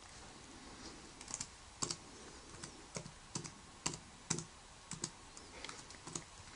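Laptop keyboard being typed on: about twenty quiet single keystrokes at an uneven pace, entering an SSH login command and password.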